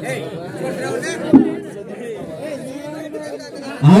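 Men's voices talking quietly, more than one voice at once, with a single sharp knock about a second and a half in. Near the end a man's voice starts loudly over the microphone.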